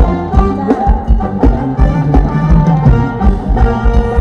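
Live Thai ramwong dance band music played loud through large PA speakers: a steady, even drum beat under a sustained melody.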